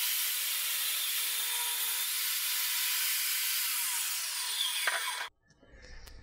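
DeWALT jobsite table saw cutting a sheet of Baltic birch plywood to size: a steady, high-pitched cutting noise that cuts off suddenly near the end.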